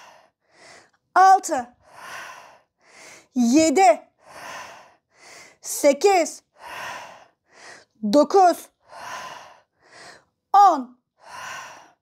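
A woman breathing hard through exercise repetitions. Five short, loud voiced exhales of effort come about every two seconds, with quieter quick breaths in between.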